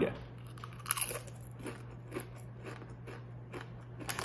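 A person eating a Doritos tortilla chip: a sharper bite-crunch about a second in, then chewing crunches at roughly two a second.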